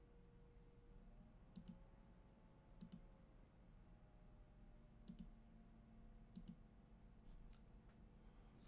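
Near silence: room tone with four faint, brief double clicks spread through it.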